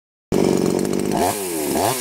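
Brand-new HYD Professional two-stroke petrol chainsaw running on its first start. It runs high and steady at first, then about a second in it is blipped on the throttle, its pitch falling and rising about three times a second.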